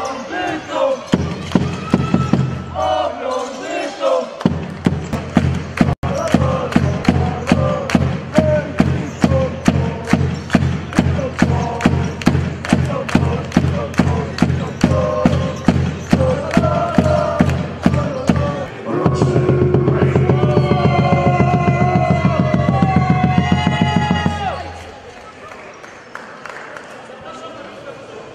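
Background music with a fast, steady beat of about three beats a second over a held bass. From about nineteen seconds a louder sustained section with rising vocal or synth notes takes over, then drops away about a second and a half before the end.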